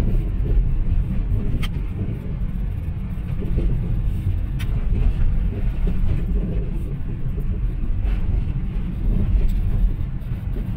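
Steady low rumble of a car driving along a city road, heard from inside the cabin: engine and tyre noise, with a couple of faint ticks.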